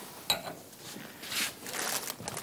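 Faint kitchen handling noises as pasta goes into the pan: a short metallic clink about a third of a second in, then a soft hiss about a second and a half in.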